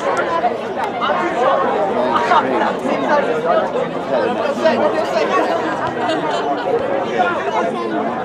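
Spectators talking at once near the microphone: a steady mass of overlapping conversation with no single clear voice.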